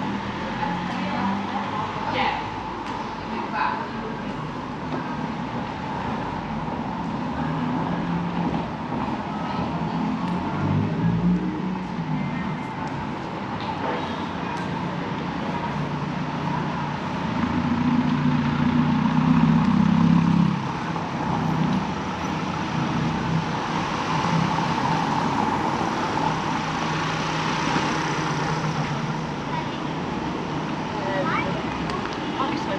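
Street ambience: steady traffic noise and voices of passers-by, with a louder vehicle passing about eighteen seconds in.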